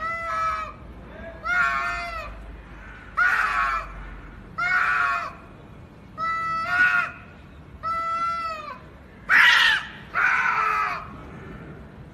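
Domestic cats in a face-off yowling at each other: a series of about eight long, drawn-out wavering yowls, each about a second long. These are the threatening yowls that cats trade in a standoff before a fight.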